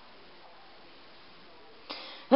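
Faint steady hiss of quiet room tone, with a slight rise just before the end.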